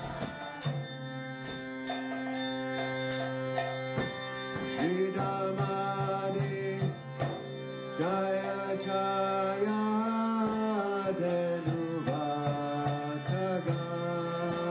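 Devotional kirtan chanting: a voice singing a mantra over a held drone note, with a steady beat of sharp high clicks.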